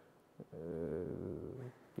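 A man's long, drawn-out hesitation "uh", held for about a second starting about half a second in.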